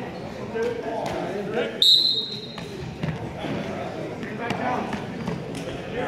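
Referee's whistle: one short, shrill blast about two seconds in, the loudest sound here, signalling the wrestlers to start from the referee's position. Voices of spectators shouting indistinctly go on around it.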